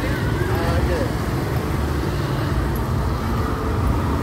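Steady street traffic noise from motorbikes and tuk-tuks on a wet road, with faint voices in the first second.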